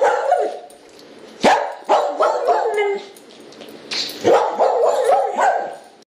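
A dog barking and yipping in three bouts of wavering, whining pitch.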